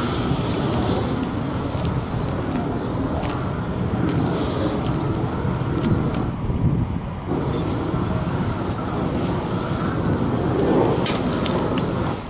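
Steady low rumbling outdoor noise of wind and city traffic, with a few faint clicks as a hand-cranked fastener pull tester is turned steadily, loading a spike anchor set in a concrete roof deck.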